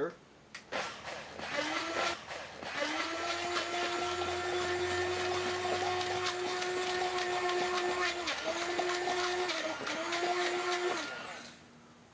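Hand-held immersion blender running in a stainless steel bowl, blending strawberries, balsamic vinegar and honey into a vinaigrette. A few short starts give way to a long steady motor whine, which dips briefly twice near the end and stops about a second before the end.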